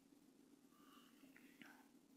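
Near silence: room tone with a faint steady hum and a couple of faint clicks about three-quarters of the way through.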